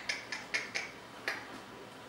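A quick run of about six sharp clicks in the first second and a half, then quiet room tone.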